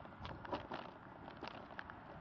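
A bicycle on the move: light, irregular clicks and rattles over a low, steady rumble, clustered about a quarter second in and again past the middle.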